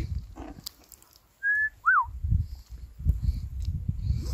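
Two short, clear whistled notes about a second and a half in: the first held steady, the second swooping up and back down. Low rumbling noise comes and goes around them.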